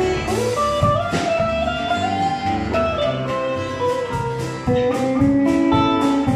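A small band jamming: electric lead guitar playing held notes and string bends over acoustic guitar, bass and a drum kit.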